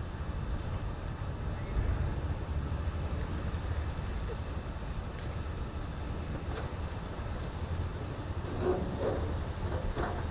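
Komatsu hydraulic excavator's diesel engine running with a steady low rumble during building demolition, with a brief louder patch of noise near the end.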